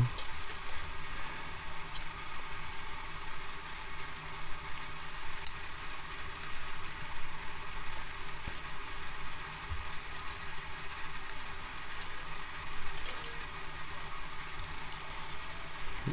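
A steady background hiss with a few faint clicks while a man chews a spoonful of food.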